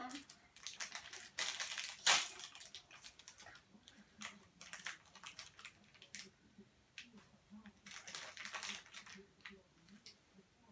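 Plastic blind-bag packaging crinkling in irregular bursts as it is handled and pulled open, loudest about two seconds in.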